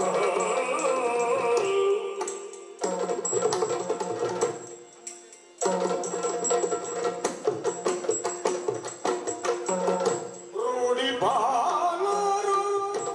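Yakshagana music: a bhagavata singing over a steady drone, with maddale and chande drums playing dense rhythmic strokes. The singing comes at the start and again near the end, with the drumming carrying on between, and the music dips briefly twice in the middle.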